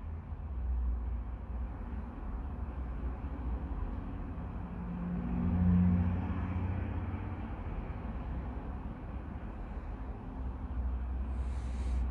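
Low background rumble that swells briefly around the middle, with a faint hum.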